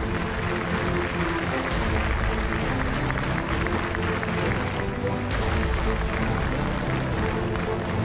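Audience applause with walk-on music playing over it, both steady throughout.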